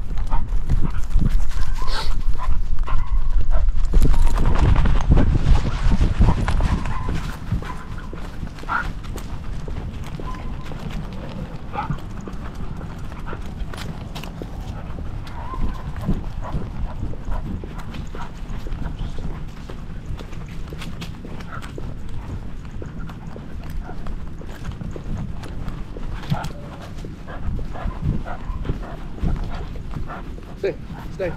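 Handling noise from a camera strapped to a beagle's back as it walks: a dense patter of knocks, rubs and rustles in time with its steps, with low rumble from the mount jostling. It is loudest for roughly the first seven seconds, then settles to a steadier, quieter patter.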